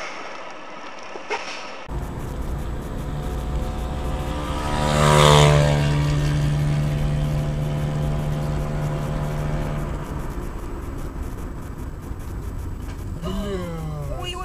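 Road vehicle driving: steady engine hum and road noise, with a louder rush swelling to a peak about five seconds in. The sound changes abruptly about two seconds in.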